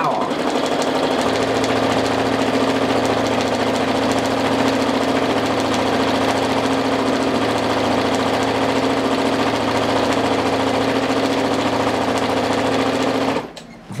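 Brother NQ470 domestic sewing machine running at a steady speed while free-motion quilting through fabric and batting with its free-motion quilting foot. It stops suddenly near the end.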